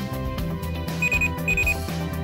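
Electronic pill-box alarm beeping, the MedQ's signal that a dose is due: short high beeps in pairs, two of them about a second in, over background music.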